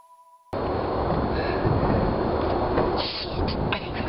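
The last notes of a song ring out and fade, then about half a second in the sound cuts abruptly to a loud, steady rumbling noise on a camera microphone, with a few clicks near the end.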